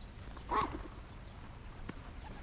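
A small dog barking once, a short sharp bark about half a second in.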